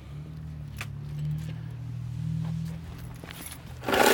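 A motor vehicle engine running with a steady low hum, with a few faint light clicks over it.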